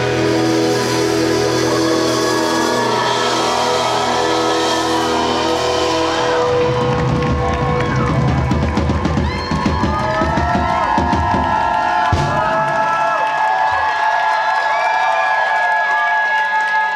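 Live rock band closing a song with a noisy outro: distorted electric guitars and a drum kit playing loudly. Partway through the drums break into rolls, which stop about 13 seconds in, leaving ringing, wavering guitar tones sustaining on their own.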